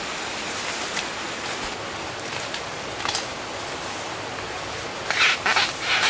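Bamboo shoots and stalks being snapped and pulled by hand amid rustling vegetation: a few faint clicks, then a cluster of three or four loud, short crackling snaps near the end, over a steady background hiss.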